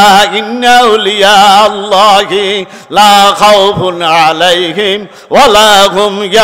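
A man's voice chanting in long held, wavering notes in a few sung phrases: a preacher intoning in the melodic style of a Bengali waz sermon.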